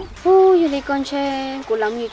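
Speech only: a woman talking in Hmong, with long held, level-pitched syllables.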